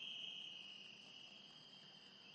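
Faint, steady high-pitched trill of crickets.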